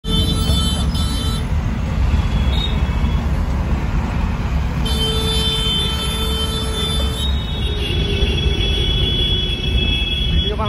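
Heavy road traffic heard from inside a car: a steady low rumble of engines and tyres, with vehicle horns held near the start and again from about five to seven seconds in.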